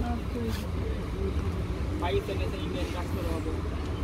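Low, indistinct talking in the background over a steady low hum.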